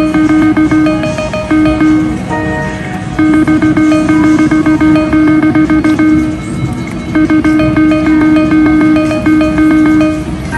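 Video keno machine sounding its rapid, repeating electronic draw tones as numbers are drawn. The tones come in runs of a few seconds, broken by short pauses between games.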